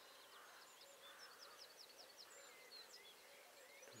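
Faint birdsong from several small songbirds: quick high notes, short sweeps and rapid runs of notes overlapping through the whole stretch.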